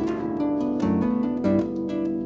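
Salvi Echo electroacoustic harp played solo: plucked notes and chords ringing on over low bass notes.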